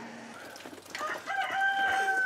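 A rooster crowing: one long, drawn-out crow that begins about a second in.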